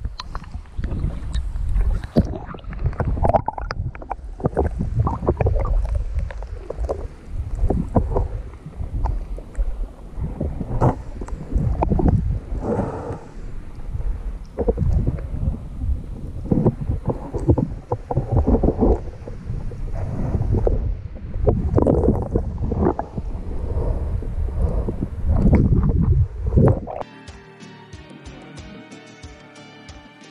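Stream water rushing and sloshing against a submerged action camera's housing, in irregular low rumbling surges as the camera is moved around underwater. Music starts near the end.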